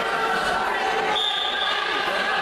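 Many voices murmuring in a large sports hall. About a second in, a short steady referee's whistle blast signals the start of the wrestling bout.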